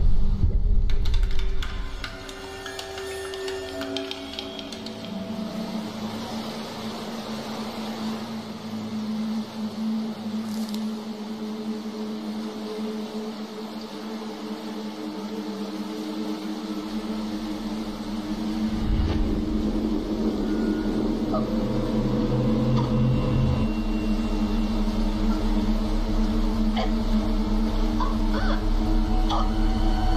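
Suspenseful horror film score of sustained low drones and held tones. It opens with a loud hit, settles, then slowly swells louder through the second half.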